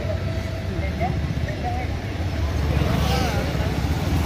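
Street traffic: engines of passing vehicles running steadily, with a car driving past close by in the second half. Faint voices underneath.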